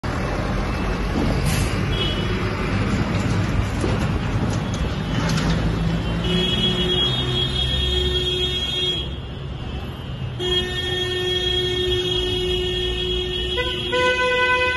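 Car horns honking in long held blasts over the running engines of a vehicle convoy. One horn sounds for about three seconds, breaks off, then sounds again for another three or so, and a second horn of a different pitch joins near the end.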